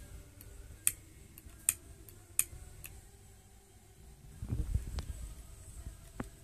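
Long-neck utility lighter's trigger clicked over and over, sharp clicks a little under a second apart with fainter ones between, the lighter failing to light. A low rustle of handling follows about four and a half seconds in.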